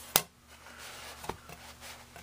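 A shellac disc record being handled: one sharp click just after the start, then a softer knock about a second later, among faint rubbing.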